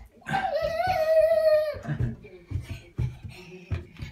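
A toddler's long, high-pitched vocal call held on one pitch for about a second and a half, followed by several soft thumps as the child comes down carpeted stairs.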